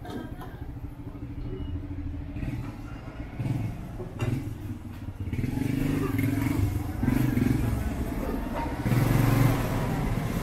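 Street traffic, led by a motor vehicle's engine running at close range, which grows louder about halfway through.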